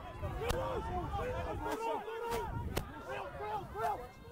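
Several people shouting and calling over one another during open rugby play, with a few sharp knocks and a low rumble underneath.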